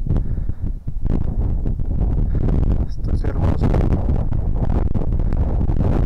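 Strong wind buffeting the microphone: a loud, low, gusting rumble that varies from moment to moment.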